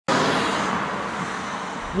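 A car driving past on the road, a steady rush of tyre and engine noise that slowly fades.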